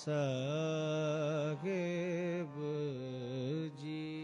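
Gurbani kirtan: a male voice singing long, ornamented held notes with a wavering pitch, over a harmonium, in three phrases with short breaks between them.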